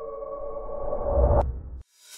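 Intro music: a held synthesizer chord that swells louder and ends in a sharp click about one and a half seconds in, followed by a moment of silence and a short whoosh at the end.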